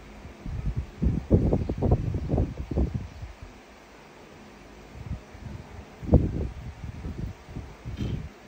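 Soft low bumps and rustling in two bursts, the first lasting about two seconds from a second in, the second starting about five seconds in, over a steady low hiss.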